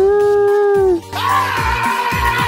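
A high, drawn-out crying wail from a cartoon woman's voice, held with a slight waver, over light background music. It breaks off about a second in, and a harsher, noisier sound effect takes its place.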